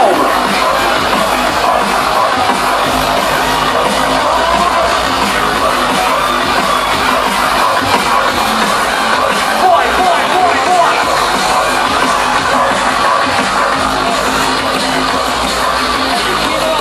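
Drum and bass DJ set playing loud and steady over a festival sound system, picked up by a phone's microphone in the crowd, with crowd noise mixed in.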